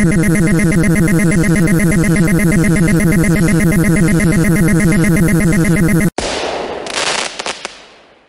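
Cartoon electric-zap sound effect: a loud, harsh buzz that lasts about six seconds and cuts off suddenly. It is followed by an explosion-like blast of noise with crackles that fades away.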